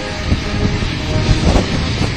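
Wind buffeting an outdoor microphone in the rain, a heavy gusting rumble with swells about one and a half seconds in, and faint band music beneath it.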